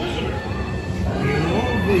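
Dark-ride show audio: background music, then a character's voice line starting about a second in, over a steady low rumble.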